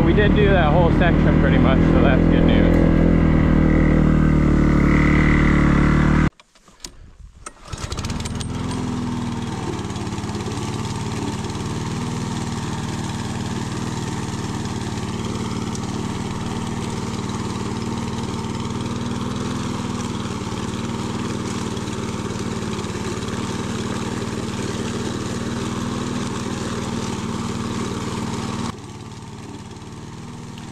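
A dirt bike engine runs and revs for about six seconds, then cuts off abruptly. After a short gap, a walk-behind gas lawn mower runs steadily while cutting tall grass. It becomes quieter shortly before the end.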